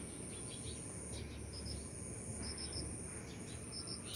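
Steady high-pitched insect trill, like a cricket's, running under brief high chirps that come in twos and threes.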